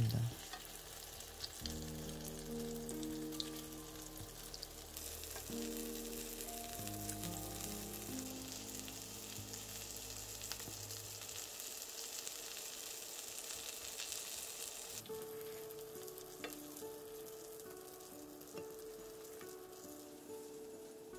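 Egg-battered pollock fillets sizzling as they pan-fry in oil, the sizzle strongest in the middle and easing off about fifteen seconds in. Soft background music plays underneath.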